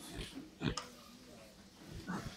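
Handheld microphone being handled: two brief knocks, the louder about two-thirds of a second in, over faint room noise.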